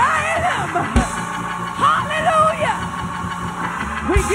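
A woman singing a gospel song into a handheld microphone, her voice bending and sliding through long runs over a low sustained backing.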